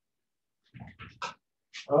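Silence, then a few short breaths close to the microphone before a man starts to speak at the very end.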